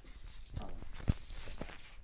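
Footsteps and handling noise on a tiled floor, with one sharp knock about a second in and faint voices underneath.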